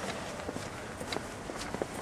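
Footsteps walking on a paved pavement: a few light, irregular steps over steady outdoor background noise.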